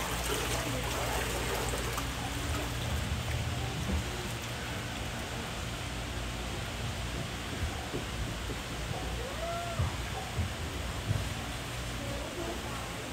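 Steady ambience aboard a ride boat moving along a greenhouse water channel: an even rush of water over a low steady hum.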